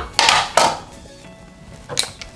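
Cardboard parts box being handled and its lid lifted: a couple of short scuffing rustles in the first half-second and a sharp knock at the end, over soft background music.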